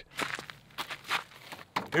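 Faint, irregular footsteps scuffing and rustling on dirt and dry leaves.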